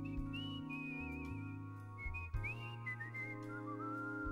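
A man whistling a melody into a microphone with a wide vibrato, the line stepping down in pitch near the end, over sustained organ chords and bass notes.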